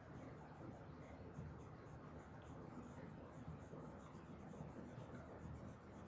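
Faint, quick scratching and tapping of a pen writing in cursive on a smart-board screen.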